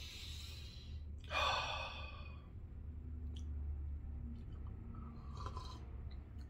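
A man's breathy exhales while sipping coffee from a cup: a short breath right at the start and a louder one about a second and a half in, then only faint small sounds.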